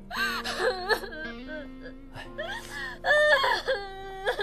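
A woman crying and wailing in distress, in several loud sobbing bouts, over background music with long held notes.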